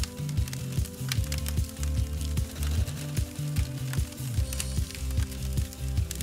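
Background music with a steady bass line, over the irregular crackle and snapping of a brush bonfire of dry branches burning.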